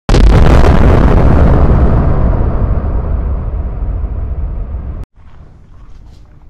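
Intro sound effect of a boom or explosion: a sudden loud hit with a low, noisy tail that fades away over about five seconds, then cuts off abruptly.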